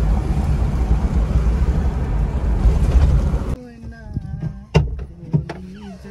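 Steady road and engine noise inside a moving car's cabin, which cuts off suddenly about three and a half seconds in. A few sharp clicks and knocks of a car door being handled follow.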